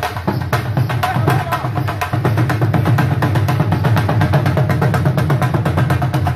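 Two Punjabi dhols drummed together in a fast, steady rhythm, deep bass strokes under sharp higher stick strokes.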